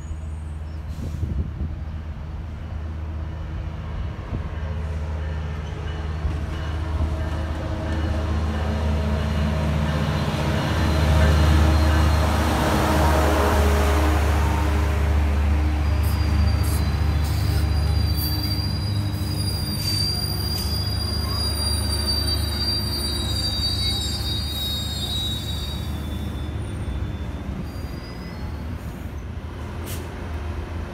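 Metrolink diesel commuter train passing close by: a low engine drone and the rush of the bilevel cars build to their loudest about a third of the way in. Then, about halfway through, high steel-on-steel squealing from the cars' wheels sets in and runs for around ten seconds as the train rolls along the platform.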